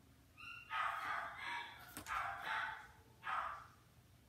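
Pet dog barking, three or four barks about a second apart.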